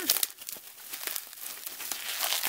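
Plastic bubble wrap crinkling as hands pull it off a small wrapped toy figure: a run of irregular small crackles.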